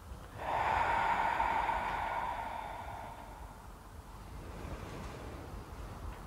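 A long, breathy out-breath through the mouth, starting suddenly about half a second in and fading away over about three seconds, as in a qi gong breathing exercise.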